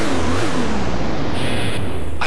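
A loud rushing, engine-like noise with a deep rumble and a tone that falls in pitch over the first second, a sound effect on a television commercial's soundtrack.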